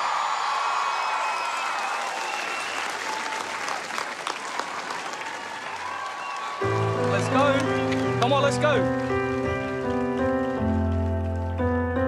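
Studio audience applauding and cheering. About six and a half seconds in, slow piano chords begin, with a few whoops from the crowd over them.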